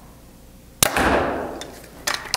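Bowtech Core SR compound bow, set at 70 pounds, firing a 440-grain arrow. One sharp crack about a second in, dying away over about a second.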